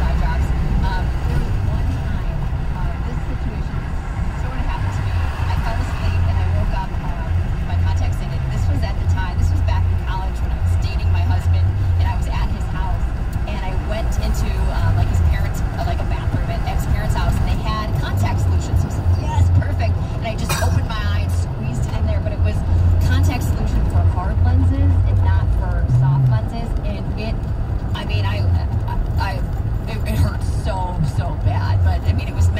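Steady low road and engine rumble inside a car cabin at highway speed, with muffled voices talking under it.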